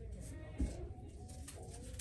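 Faint, low murmur of voices in a small room, with a single dull thump about half a second in.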